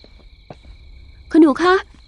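Crickets chirping in one steady high trill, with a couple of faint taps. A woman's voice cuts in over them near the end.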